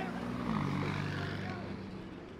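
Sports car engine passing close by at low speed. Its note drops in pitch about half a second in as it goes past, then fades.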